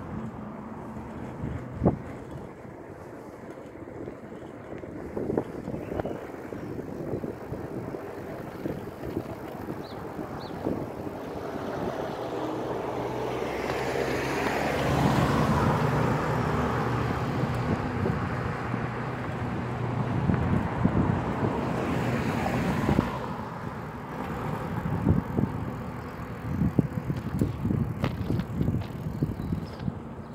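A bicycle ridden along a road, with wind on the microphone and frequent rattles and knocks from the bike over the road surface. About twelve seconds in, a car comes up and passes. Its engine hum and tyre noise are loudest around fifteen seconds in and drop away at about twenty-three seconds.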